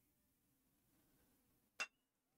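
Near silence, then near the end a single sharp crack of a baseball bat hitting a pitched ball, with a brief ringing tone after it.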